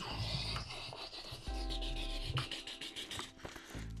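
Rubbing and scraping of a hand and a small cardboard box sliding across a wooden tabletop as the box is picked up, an uneven scratchy noise with a few small clicks.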